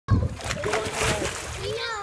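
Water splashing in a swimming pool as a child ducks under for a flip, with voices over it.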